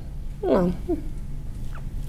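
A woman's short, falling spoken "no" about half a second in, with a brief squeaky vocal sound just after, then room tone with a low steady hum.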